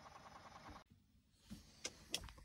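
Near silence: faint room tone that cuts off abruptly a little under a second in, followed by a couple of faint clicks.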